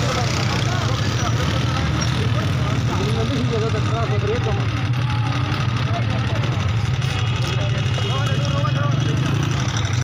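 A car engine idling with a steady low hum, under several voices talking over one another.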